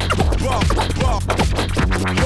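Loud hard dance music from a live electronic set, with a driving low-end beat and quick, repeated swooping sounds that come across like scratching.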